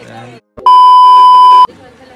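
A loud, steady, high-pitched beep lasting about a second, starting and stopping abruptly: an edited-in censor bleep tone.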